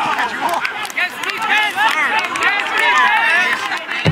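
Several voices of ultimate frisbee players shouting and calling out over one another.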